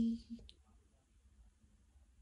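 A woman's voice trailing off, one short faint click about half a second in, then near silence: room tone.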